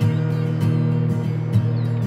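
Instrumental passage of a folk-pop song: strummed acoustic guitar over steady low notes, with new strokes coming about every half second to a second.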